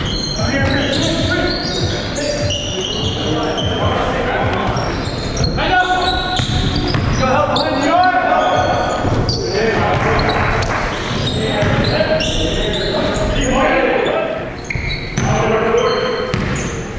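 Game sound from an indoor basketball court: a basketball bouncing on the hardwood floor with repeated sharp thuds, and players' indistinct shouts and calls echoing around the gym.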